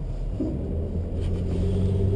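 Car engine and road rumble heard from inside the cabin while driving, with a steady engine hum coming up about a second in.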